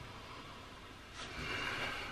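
A person sniffing at an open bottle through the nose. The first second is quiet, then a soft breathy sniff comes in the second half.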